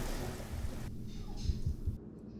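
Rain-and-thunder sound effect: a steady rain hiss that drops away about a second in, over low rumbling.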